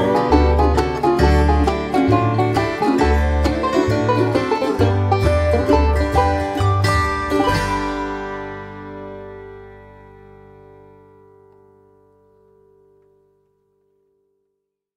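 Bluegrass band's instrumental ending: fast banjo picking over guitar and a walking bass line, closing on a final chord about seven and a half seconds in that rings on and slowly fades to silence.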